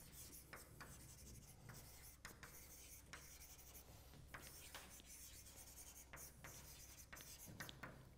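Chalk writing on a blackboard: faint, irregular scratches and taps of the chalk, about two strokes a second, over a low steady room hum.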